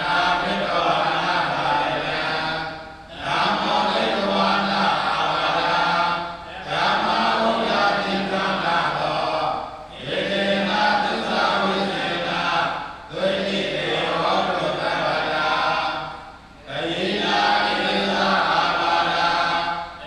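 Theravada Buddhist monks chanting Pali paritta verses together on a near-level pitch, in phrases of about three seconds broken by short pauses for breath.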